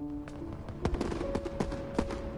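Fireworks going off outside in a run of irregular sharp pops and crackles that grow denser toward the end, with background music holding long steady notes underneath.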